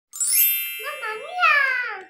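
Channel intro sting: a sparkling chime rings out at the start and fades, then a high, child-like voice sings a short phrase that slides down in pitch near the end.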